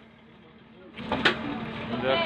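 Motor boat engine running steadily with water and wind noise, faint at first and then louder about a second in, with people's voices over it.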